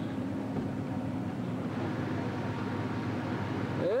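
Toyota Land Cruiser 80-series engine running steadily, a continuous low hum with a hiss over it.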